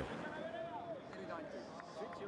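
Voices of a celebrating crowd: several people talking and calling out at once, quieter than the commentary around it.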